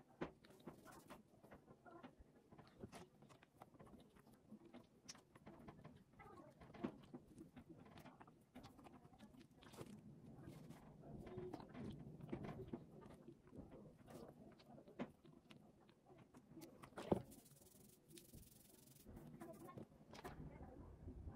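Near silence with faint rustling and small scattered clicks of hands working wet hair and cloth, and one louder click near the end.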